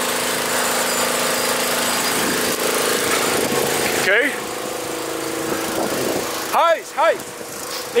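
A bushfire's broad rushing roar, with a small engine running steadily underneath it. A shout cuts through about four seconds in, and loud shouting starts near the end.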